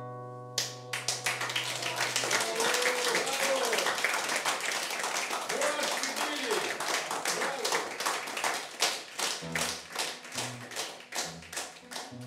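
Audience applauding. A held chord on a skeleton-frame silent guitar is still ringing under the first couple of seconds, and a few voices call out during the clapping. Near the end the applause thins and the guitar plays a few single notes.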